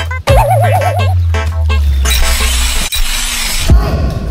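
Comic sound effects replacing dance music: a wobbling cartoon boing over a long, falling low tone, then a hissing whoosh and a thump near the end.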